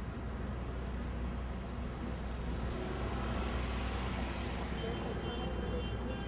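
Road traffic noise with a steady low rumble; a vehicle swells past in the middle and fades.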